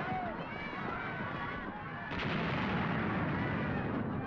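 Film battle sound effects: continuous explosions and gunfire, with a fresh blast about two seconds in, over men shouting.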